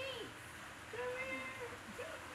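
A baby's voice: a short falling squeal at the start, then a long held cooing note about a second in.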